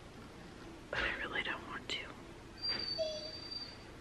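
Dog whining: a few high, wavering whimpers about a second in, then a thin, steady high whine near the end.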